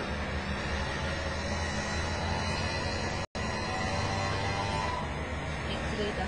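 A car engine running at idle, a steady low hum, with a brief dropout about three seconds in.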